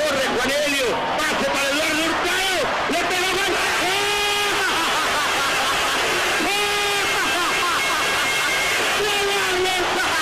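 Broadcast football match sound: a stadium crowd's continuous din under an excited commentator's voice calling the play, with long held shouts about four and seven seconds in.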